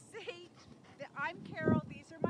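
A dog whining in a few short, high-pitched whimpers.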